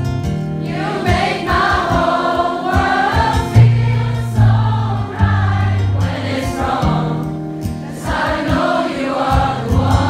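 Audience singing a chorus together over a strummed acoustic guitar, with the voices coming in about a second in.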